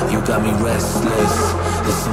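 Loud electronic dance music in the future rave style, played in a live DJ set, running continuously over a steady deep bass.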